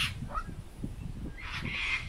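Bush stone-curlews calling at close range: a few short calls near the start, then a harsher, rasping call from about a second and a half in.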